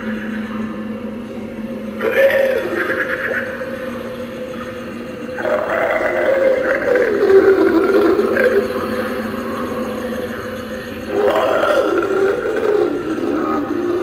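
Spirit Halloween Bog Zombie animatronic's built-in speaker playing gurgling zombie growls and moans. They come in three bouts, starting about two, five and eleven seconds in.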